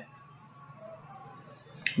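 Quiet room tone with one sharp, short click near the end, just before speech resumes.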